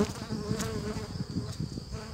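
Honeybees buzzing around an open hive and a bee-covered brood frame. One buzz close by holds a steady pitch for about a second, over a thin high steady whine and a low flickering rustle.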